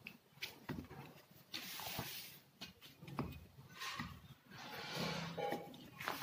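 Swishing rustles of a plastic banner sheet being pressed and smoothed by hand under a layer of halwa, in a few short sweeps with small clicks and knocks between them.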